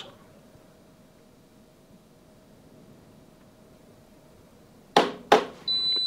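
Hotpoint washing machine's door interlock clicking twice, about five seconds in, as it releases the door at the end of the test cycle. The machine's high-pitched end beep starts just after.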